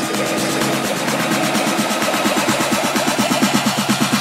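Tech house dance music playing continuously: a dense electronic track with a quick repeating pulse of short rising notes.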